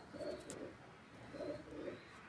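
Domestic pigeon cooing: two low coos, each about half a second long and about a second apart.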